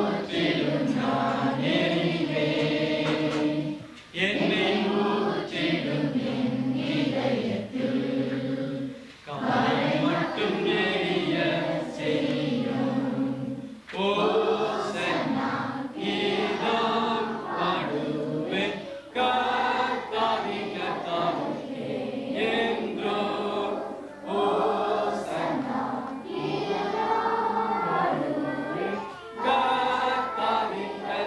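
A group of girls' and children's voices singing a song together, in phrases of about five seconds with short breaks between them.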